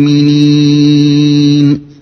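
A man's voice holding one long, steady chanted note at the close of a Quranic verse recitation, fading out near the end.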